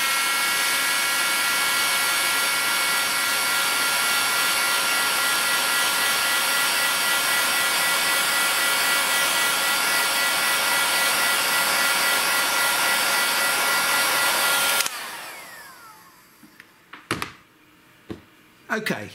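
Bosch heat gun running steadily, its fan and air blowing with a steady whine, until it is switched off about three-quarters of the way through and winds down with a falling pitch. A single sharp knock follows near the end.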